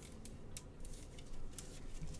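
Trading cards and clear plastic card holders being handled by gloved hands: a scatter of faint, short clicks and scrapes.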